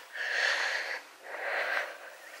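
A woman breathing hard, two long breaths in and out, out of breath from walking up a grassy slope.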